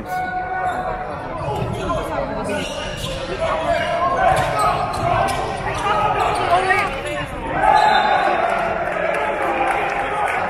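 Basketball game in a large indoor arena: a ball bouncing on the court amid the chatter and calls of spectators and players, with a held call late on.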